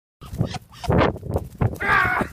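An animal giving a series of short, harsh cries, the loudest near the end.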